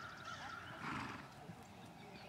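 A horse whinnying: one long wavering call that swells to its loudest about a second in, then fades.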